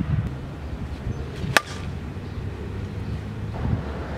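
A softball bat hitting a pitched ball once, about one and a half seconds in: a sharp crack with a brief ring. Steady wind rumble on the microphone underneath.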